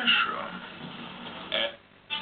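Television sound from a film channel: a voice at first, then the sound cuts off suddenly to a brief silence near the end as the digital TV receiver switches to the next channel.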